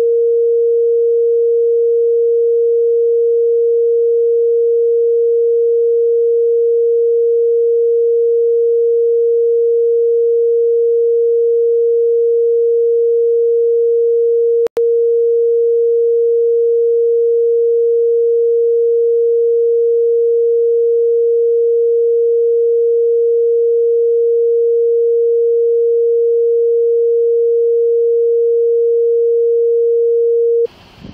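A continuous, loud, steady pure beep tone that breaks off for an instant about halfway through. It is an edit tone laid over the bodycam audio, which blanks out the conversation.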